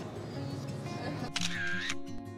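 Background music, with a camera-shutter sound effect about one and a half seconds in, laid in as an edit effect for a cut to a photo.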